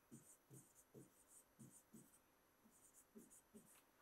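Near silence with faint, short taps and scratches of a pen writing on a digital whiteboard, with a brief pause past the middle.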